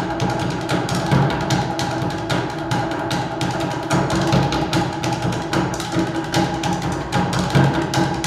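A percussion ensemble playing a fast, steady rhythm with sticks on wooden percussion instruments and a large bass drum.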